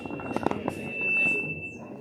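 Sound-system feedback: a single high, steady whistle that swells to its loudest about a second in and fades away near the end, over the low murmur and rustle of a seated congregation.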